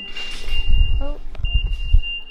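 A car's warning beep: one steady high-pitched tone that breaks off briefly about a second in and then resumes. It comes from the Mitsubishi Lancer Evolution X and sounds because of the key, which is still with the driver as she gets out.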